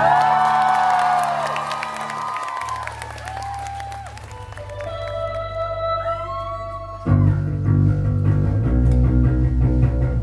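Live rock band music. Held bass notes and sustained, pitch-bending electric guitar tones ring out, then about seven seconds in the bass guitar and drums come in loud and full.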